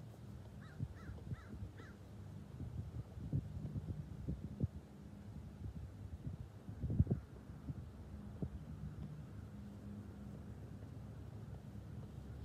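Soft, irregular thuds of a soccer ball being dribbled with short touches on grass, the loudest about seven seconds in, over a low steady hum. A bird gives four short calls near the start.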